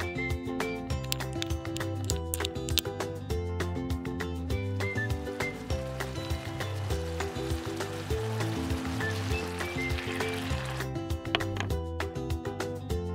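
Light instrumental background music throughout; from about four seconds in to near the end, sauce thickened with cornstarch sizzles in a miniature wok as it is stirred.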